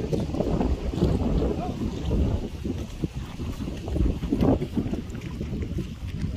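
Wind buffeting the microphone, a gusty low rumble that rises and falls throughout.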